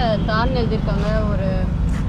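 A person talking, with a low steady rumble underneath.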